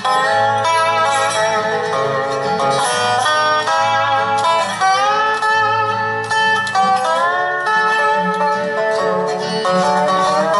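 Resonator guitar played lap-style with a steel bar: a picked instrumental melody, several notes sliding up into pitch.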